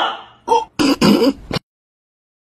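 A person's voice in a few short, throaty outbursts like throat clearing. The sound then cuts off to dead silence about one and a half seconds in.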